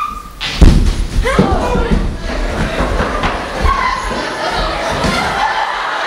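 A heavy thump on the wooden stage about half a second in, followed by several voices shouting over one another in a large hall.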